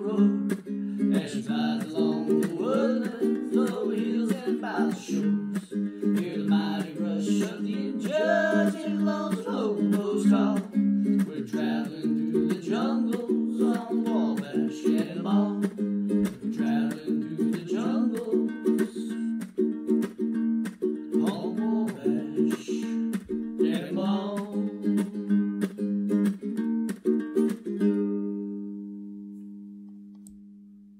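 Ukulele playing an instrumental passage with steady rhythmic strumming. Near the end a final chord rings out and fades away.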